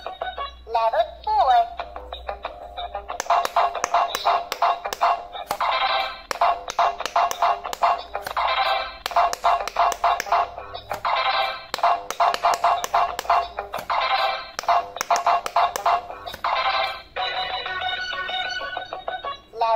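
Handheld electronic quick-push pop-it game playing its electronic tune and beeps while its lit silicone buttons are pressed quickly, a sharp click on each press. The presses come in fast runs with short pauses between, starting about three seconds in.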